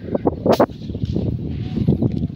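A single sharp shot from an air rifle firing a slug, about half a second in, followed by rustling and handling noise.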